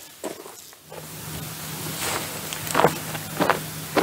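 A handful of footsteps on a wood-chip path, uneven and a little apart, over a light hiss. A steady low hum comes in about a second in and stays under the steps.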